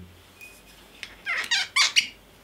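Cork stopper squeaking as it is twisted out of a glass whisky bottle's neck: a quick run of four or five rising squeaks in the second half, ending in a sharp click as it comes free.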